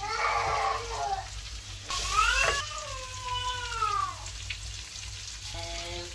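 A cat meowing three times; the last is the longest, a drawn-out call that falls in pitch.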